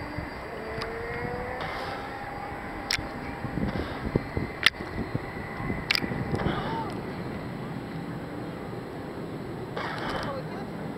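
Sea water sloshing and lapping around a camera held at the surface by a swimmer, with a few sharp clicks in the middle.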